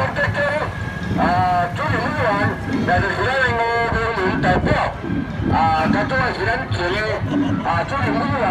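Men's voices talking and calling out loudly close to the microphone, over a steady low background rumble.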